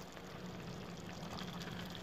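Chicken in a tomato and milk sauce simmering in a pot, bubbling faintly and steadily.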